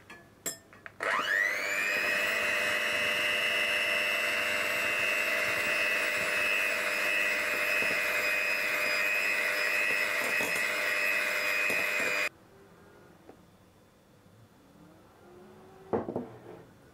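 Electric hand mixer beating egg-yolk batter in a glass bowl. After a couple of clicks, the motor spins up about a second in with a quickly rising whine, runs steadily, and cuts off suddenly about three-quarters of the way through. A single knock comes at the very end.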